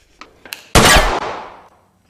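A single pistol shot: a loud, sudden bang about three quarters of a second in that dies away over about a second, after two faint clicks.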